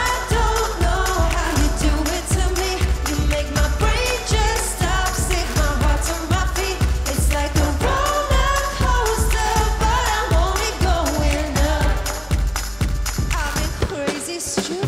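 Pop dance music with a heavy, steady bass beat and vocals over it.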